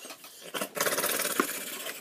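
A VHS cassette and its plastic case being handled: a scraping rustle starting about half a second in and lasting over a second, with a couple of sharp clicks.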